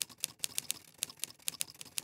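A run of sharp, irregular clicks, about five a second, like typewriter keys striking.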